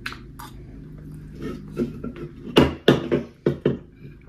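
Fork and spoon clinking and scraping against a plate while eating: a couple of light clicks at the start, then a quick run of louder clinks in the last second and a half.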